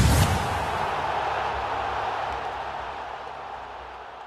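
Sound-effect hit for an end-card graphic, followed by a long noisy tail that slowly fades away.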